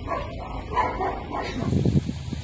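A dog barking repeatedly in short yips. About one and a half seconds in, the sound changes to a low rushing rumble.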